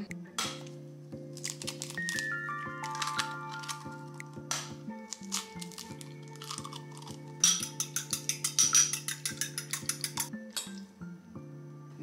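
Eggs cracked and then beaten in a small ceramic bowl: a few scattered taps, then a fast, even clinking of about seven strokes a second for around three seconds, over background music.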